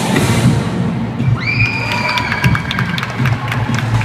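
Loud dance music for a routine, with a large crowd cheering and shouting over it. A high note slides up and holds about a third of the way in, and the second half carries quick sharp ticks.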